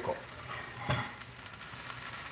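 Smoked salmon, onions and a little water sizzling gently in a skillet while being stirred with a silicone spatula. The water is there to half-steam the salmon so the pieces don't break up.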